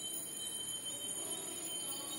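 A felt duster rubbing chalk off a blackboard, faint, under a thin steady high tone.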